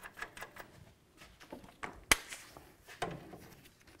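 Light metallic clicks and ticks as a castle nut is spun by hand onto a tie rod end stud, followed by a single sharp click about halfway through and a fainter one a second later.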